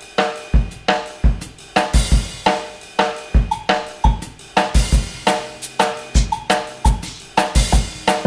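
Drum kit playing a bossa nova groove with sticks: bass drum thumps, tom strokes and cymbal, with extra hand percussion layered over it, including a plastic bottle struck with a drumstick and a hand drum.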